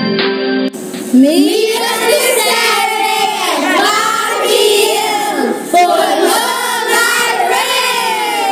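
Soft instrumental music stops under a second in, and a group of children begin singing together, many voices at once.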